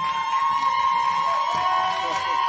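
Celebratory cheering with a long, steady held whoop, joined by a second, lower held voice about a second and a half in.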